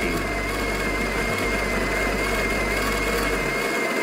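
The built-in burr grinder of a Breville espresso machine running steadily, grinding coffee beans. Its low motor hum stops near the end.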